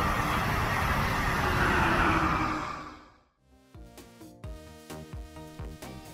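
A Brightline passenger train rushing past at high speed, a loud steady rush of wheels and air that fades out about three seconds in. After a brief gap, background music starts.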